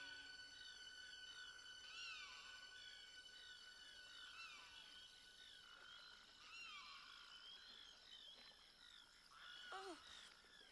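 Faint night-time swamp ambience: a chorus of frogs giving short, falling chirps over and over. A lower falling call comes near the end.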